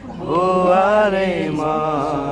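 Voices singing a slow Nepali hymn in long drawn-out notes: one held note rises and falls in pitch, then the next note begins near the end.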